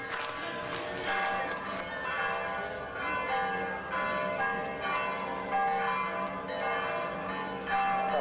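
Bells chiming a melody, many ringing notes struck one after another and overlapping as they sustain.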